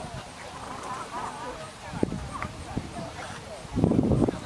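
Quiet voices of people talking in the background, with a couple of short clicks about two seconds in.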